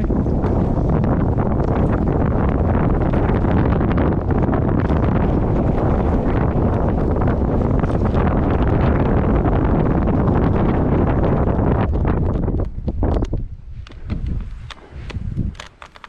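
Wind rushing over an action camera's microphone on a fast mountain-bike descent, with the tyres rolling over a loose stony trail. The noise holds steady and then falls away sharply about three-quarters of the way through as the bike slows.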